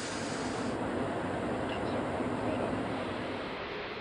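Steady, even engine and airflow noise heard inside the cockpit of a B-52 Stratofortress in flight.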